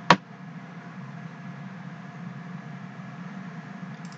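A single computer mouse click just after the start, then steady low hum and hiss of room tone.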